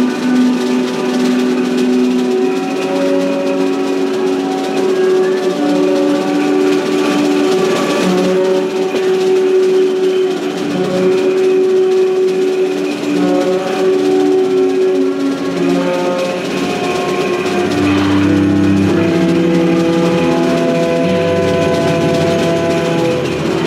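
Live free-improvised jazz: trumpet and saxophone holding long, overlapping notes over soft drums, the pitches shifting slowly. Lower notes join about 18 seconds in.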